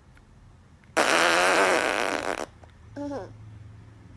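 A loud, long fart lasting about a second and a half, starting about a second in, followed about three seconds in by a brief falling voice sound.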